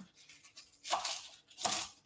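Knife slicing through kale leaves on a wooden chopping board: two short cutting strokes, the first about a second in, the second near the end.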